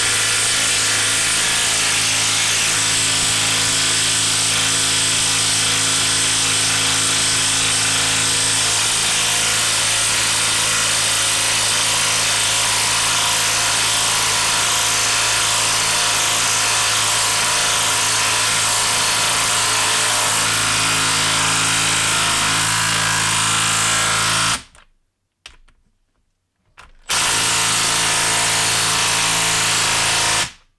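Makita brushless 1/2-inch impact wrench, set to its high screw mode, hammering steadily as it drives a six-inch lag screw into a log. The hammering stops for about two seconds near the end, then runs again for a few seconds.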